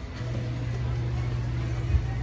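A steady low motor hum that starts just after the beginning and holds, with a short thump near the end.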